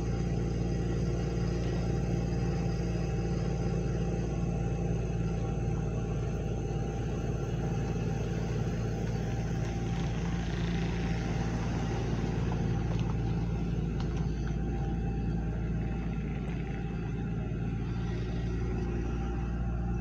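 A motor vehicle's engine running steadily: a constant low rumble with no revving, holding its level for the whole stretch.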